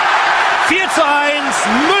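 Steady football stadium crowd noise under a TV commentator's voice, which rises into an excited shout of the scorer's name near the end as a goal is scored.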